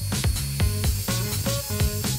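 Background music with a steady beat over a steady hiss from a dental drill grinding a training model of teeth.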